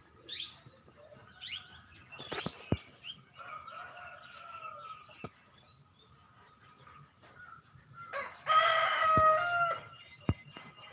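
A rooster crowing once, loud and held for over a second, near the end, with a fainter, shorter call of the same kind earlier. Small birds chirp briefly near the start, and there are a few sharp knocks.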